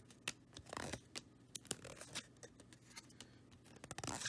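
Glossy trading cards flipped through by hand: faint, irregular clicks and short scrapes of card sliding against card.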